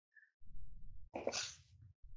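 A person's short, faint breath near a headset microphone, a brief hiss about a second in over a low rumble.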